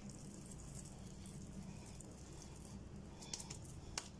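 Faint, soft squishing and patting of oiled hands shaping a minced chicken-and-noodle kabab mixture into a ball, with a couple of small clicks near the end, over a low steady hum.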